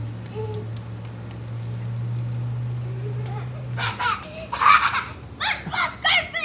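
A steady low hum lasts about four seconds and then stops. It is followed by a child's loud shouts and laughter near the end.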